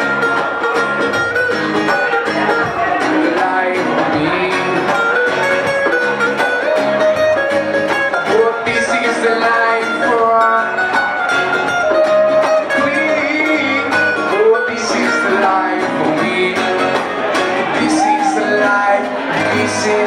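Live acoustic band playing: several acoustic guitars strummed over a hand drum, with some singing.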